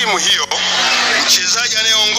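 A man speaking Swahili at a lectern microphone, with a steady low hum underneath.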